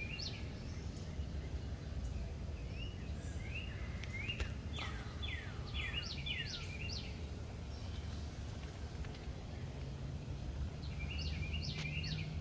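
Small birds chirping in short, quick rising and falling calls, a cluster of them in the middle and more near the end, over a steady low outdoor rumble.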